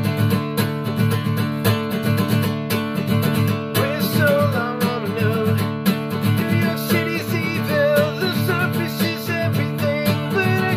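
Acoustic guitar strummed steadily. From about four seconds in, a man's voice joins in, singing a wavering melody without clear words.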